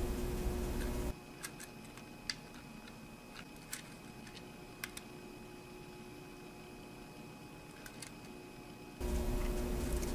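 Small plastic clicks of pluggable green screw-terminal blocks being pulled from and handled on a PLC I/O module: about eight short, sparse ticks over several seconds. A steady low hum runs through the first second and again from about a second before the end.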